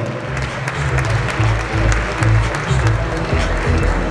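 An audience applauding over music with a heavy bass line.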